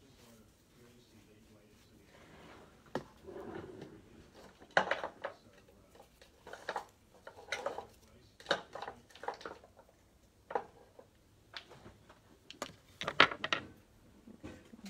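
Irregular sharp clicks and light clinks of small manicure tools and bottles being handled on a nail table, a dozen or so spread out, the loudest cluster near the end.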